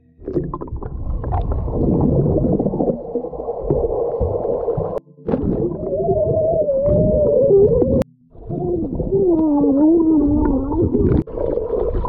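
Underwater pool recording: the low, muffled rumble of water and bubbles against the microphone. In the middle and again later comes a muffled, wavering hum, a swimmer's voice underwater. The sound breaks off briefly about five and eight seconds in.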